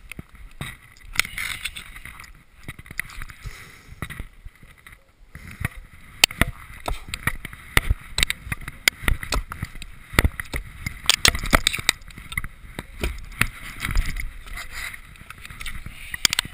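Sharp knocks and thuds of an axe and a wooden springboard against a frozen standing log. They come thick and irregular from about six seconds in, with clothing rustle and handling noise between them.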